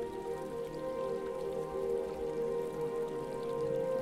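Soft ambient music of sustained, held tones over a steady bed of running water from a small stream.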